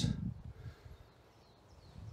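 Quiet woodland ambience in a pause between speech, with a faint low rumble in the first half-second that fades to near quiet.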